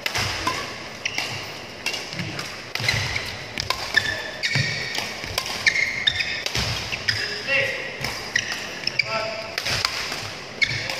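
Badminton racket striking shuttlecocks every second or so during a fast footwork drill, with shoes squeaking on the court mat and footsteps thudding between shots.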